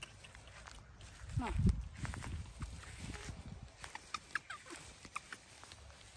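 A baby monkey's short, high squeaks among rustling in the grass, with a louder voice-like call about one and a half seconds in.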